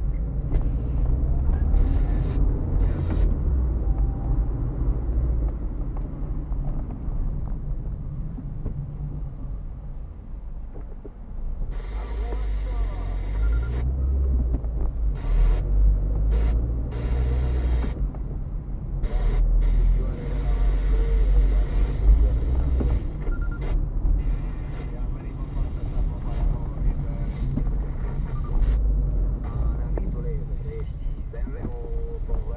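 Car cabin noise picked up by a dashcam while driving: a steady low rumble of engine and tyres, with hissier stretches about twelve seconds in and again around twenty seconds in.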